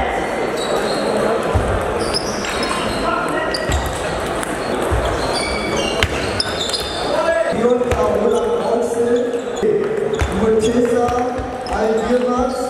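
Table tennis balls clicking sharply off bats and tables in rallies in a large, echoing sports hall. Voices of people talking in the hall are heard throughout, more so in the second half.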